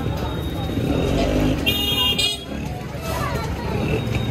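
A vehicle horn gives one short, high toot about two seconds in, lasting about half a second, over steady street traffic noise and voices.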